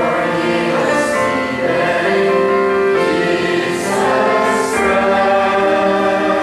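Congregation singing a hymn together, many voices holding long, steady notes, with keyboard accompaniment.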